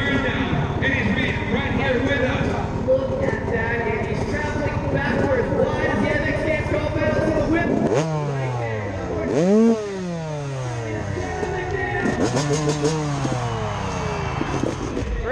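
Freestyle motocross bike engine idling with a rapid low pulse under voices for the first half. It is then revved in several rising and falling blips from about eight seconds in, the loudest about a second and a half later.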